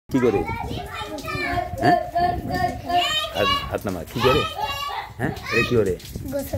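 Several children's voices talking and calling out at once, high-pitched and overlapping, with one voice holding a long steady note about a second in.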